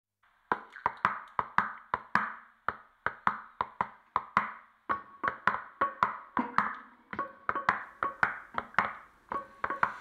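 Song intro of dry percussive clicks in a loose rhythm, about four a second in short groups. Faint held tones come in about halfway, under the clicks.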